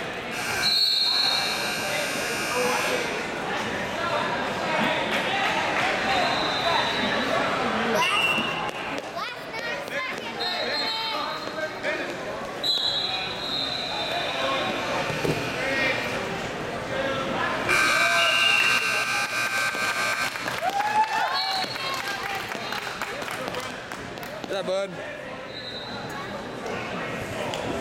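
Hubbub of spectators and coaches shouting in a large echoing gym during wrestling bouts, with thuds and several sustained high tones, each lasting a second or two.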